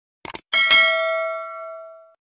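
Subscribe-animation sound effects: a quick double click, then a bell ding that rings and fades away over about a second and a half.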